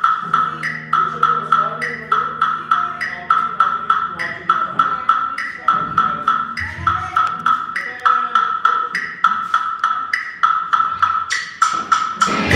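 Live rock band in a sparse passage: a steady, pitched click like a wood block or cowbell keeps time at about four a second over held bass guitar notes, and the full band comes in loudly at the very end.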